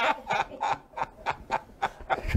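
Men laughing hard, a run of short breathy bursts about three a second.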